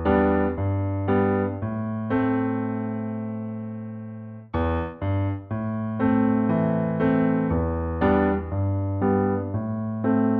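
Piano playing a slow chord riff in A minor: a bass note in the left hand under chords in the right. A long chord is held and dies away from about two seconds in, and after a brief gap near the middle the riff starts again with a run of struck chords.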